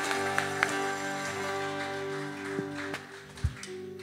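Worship band's final chord on keyboard and acoustic guitar, held and fading away, with a few light taps and a short low thump about three and a half seconds in.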